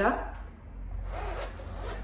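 The zip-around closure of a Louis Vuitton Pochette Jour GM being unzipped, a steady rasp of the zip pull running along the pouch's edge from about half a second in.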